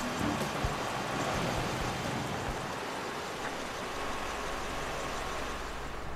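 Steady outdoor field noise of a constant rushing hiss over a low rumble, with no distinct events.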